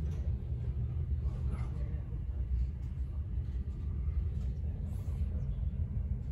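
Steady low rumble of a passenger ferry under way at sea, with faint voices in the background.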